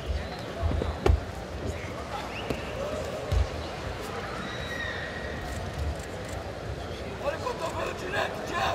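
Tournament-hall ambience: scattered shouting voices of coaches and spectators over a steady background hubbub, with a few dull thumps of grapplers' bodies on the foam mat, the clearest about a second in and after about three seconds.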